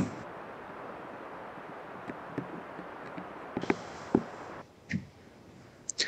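Outdoor forest ambience: a steady, even hiss with a few light ticks and clicks, cutting off to silence about four and a half seconds in.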